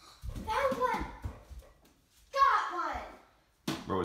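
A child's excited voice in two short outbursts, the second starting about two and a half seconds in. Under the first come light low thumps, like feet on a hard tile floor.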